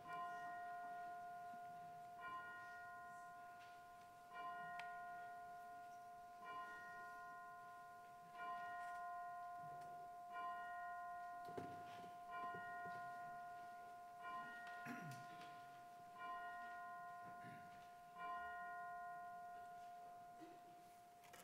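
A bell tolling slowly and faintly, struck about every two seconds, each stroke ringing out with a bright chord of tones over a steady hum that carries through.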